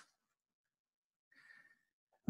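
Near silence: room tone, with a faint short breath near the end.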